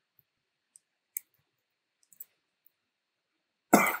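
A few faint clicks, then a single loud cough near the end.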